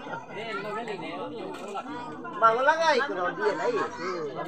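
Several people chatting at once with overlapping voices, quieter at first, with one voice growing louder a little over halfway through.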